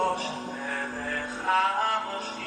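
A vocal-only (a cappella) song with male voices singing, one note held for over a second before the melody moves on.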